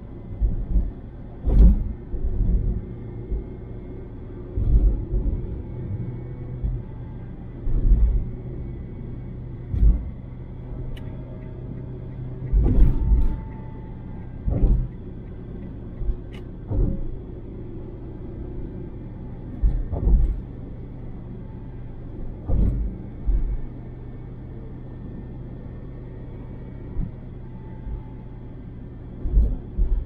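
A car driving on an elevated concrete expressway, heard from inside the cabin: a steady low road and engine rumble, broken every few seconds by short thumps as the tyres cross joints in the road deck.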